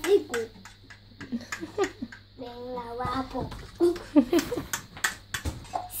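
A fork clicking irregularly against a ceramic plate as raw eggs are beaten, with young children's voices in between.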